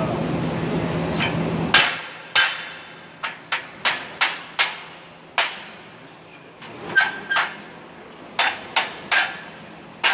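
About a dozen hammer blows, irregularly spaced, driving a curved steel band down into a circular welding fixture; some strikes carry a short metallic ring. A steady shop noise runs until it cuts off just before the first blow.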